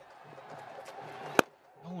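Stadium crowd murmur, then a single sharp crack of a cricket bat striking the ball about one and a half seconds in.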